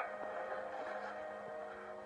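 A film soundtrack's steady droning background: held tones over a faint hiss, slowly fading down toward the end.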